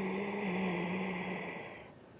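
A woman's long, audible breath with a low, steady hum of voice in it. It fades out near the end.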